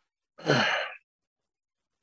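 A person's sigh: one breathy exhale lasting about half a second, over a video-call connection.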